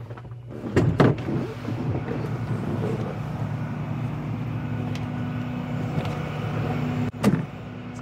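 A clunk about a second in, like a truck cab door unlatching, then the steady drone of an idling truck engine with a low hum, and a sharp knock near the end.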